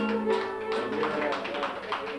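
Live Cretan folk music: a held note dies away in the first half-second, then quick plucked-string strokes carry on.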